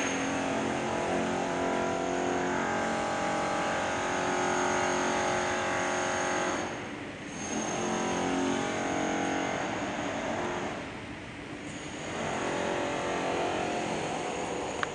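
A motor vehicle's engine running steadily, with a faint high steady whine above it; the sound dips away briefly twice.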